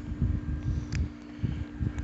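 Wind rumbling on the microphone over a steady low hum, with one faint click about a second in.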